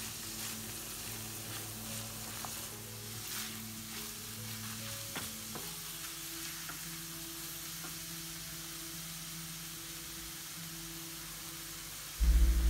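Chopped beet greens, stems and onion sizzling steadily in olive oil in a frying pan while being stirred with a wooden spoon. A couple of light spoon knocks come about five seconds in.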